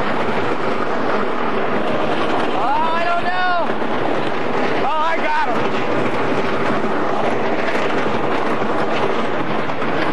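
A wooden roller coaster train running fast along its track, heard as a steady loud rush of wind on an onboard microphone with the train's rumble under it. Two short rider shouts rise and fall about three and five seconds in.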